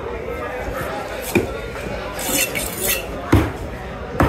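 A large curved knife chopping into fish on a wooden cutting block, two heavy knocks about a second and a half apart, with light metallic clinks and scraping between them.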